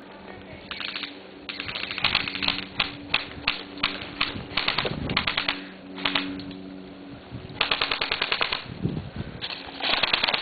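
Airsoft electric rifles firing full-auto bursts: rapid clicking of about fifteen shots a second in runs of about a second, with single shots in between.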